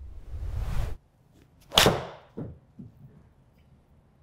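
A whoosh swells over the first second and cuts off abruptly. About a second later comes one sharp crack of a Titleist T150 iron striking a golf ball in an indoor hitting bay, the loudest sound here, followed by a couple of softer knocks.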